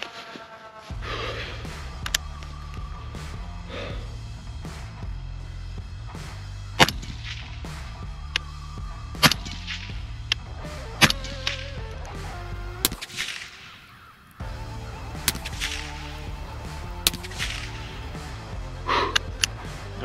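Background music plays throughout, crossed by several sharp, separate reports from an 11.5-inch short-barrelled rifle fired through a Gemtech HALO suppressor. The loudest come about seven, nine and eleven seconds in.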